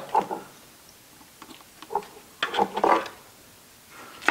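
Plastic wiring-harness connectors and corrugated split-loom tubing being handled: light clicks and rattles, with a louder burst of clicking about two and a half seconds in.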